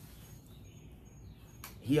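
Quiet outdoor background with faint, thin, high-pitched chirps repeating now and then; a man's voice starts near the end.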